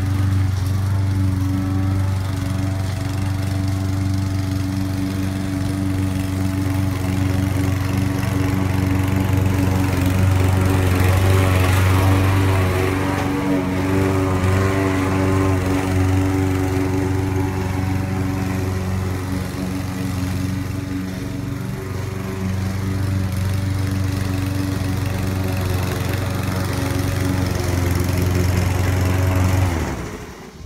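Gasoline walk-behind push mower engine running steadily under load while cutting grass, its loudness dipping slightly at times; it stops abruptly at the very end.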